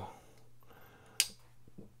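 A single sharp click from a District 9 Battle Flipper folding knife as its blade swings shut on its freshly reinstalled bearings, about a second in, followed by a couple of faint ticks, over a faint steady low hum.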